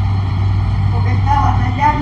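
A steady low electrical hum runs under faint, indistinct speech that comes in about a second in.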